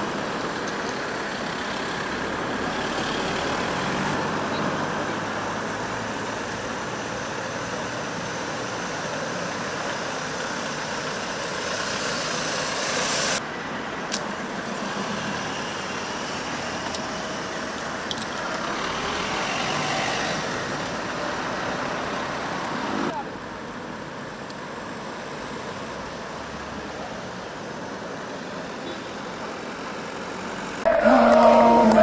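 Steady road traffic noise with a car passing, as an even hiss that changes abruptly twice.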